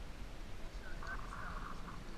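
A bird's call, a short rough cry just under a second long about a second in, preceded by a few brief chirps, over a steady low rumble of wind on the microphone.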